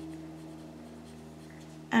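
Ballpoint pen writing on paper, a faint scratching as a couple of words are written, over a low steady hum.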